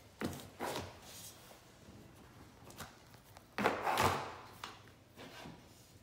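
Short rustling and rubbing handling sounds from hands and a damp cloth working a grasscloth wallpaper seam. There are two brief rustles near the start and a louder, longer rustle about three and a half seconds in.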